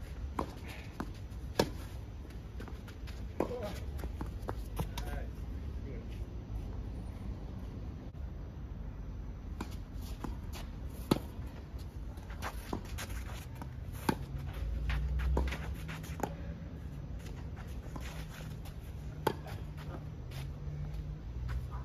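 Tennis balls struck by rackets on an outdoor clay court: sharp single pops a few seconds apart as the ball goes back and forth, over a low rumble.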